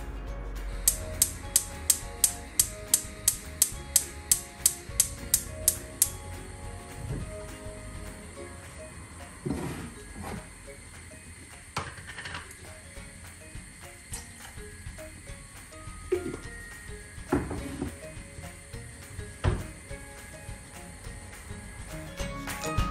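Gas hob spark igniter clicking rapidly, about three sharp clicks a second for some five seconds, until the burner lights. Background music runs under it, with a few scattered knocks later on.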